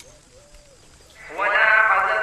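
An animal bleating once: a loud, long, wavering call that starts a little after a second in.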